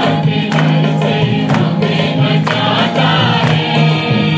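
Hindi Christian praise and worship song: choir-style voices held over instrumental accompaniment with a steady beat of about two strokes a second.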